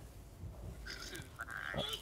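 Faint, thin voice of the person on the other end of a call, coming from a mobile phone held to the ear, starting about a second in over low room tone.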